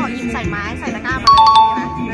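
Background music with a voice; a little over a second in, a loud two-note ding-dong chime, stepping down in pitch, rings for about half a second.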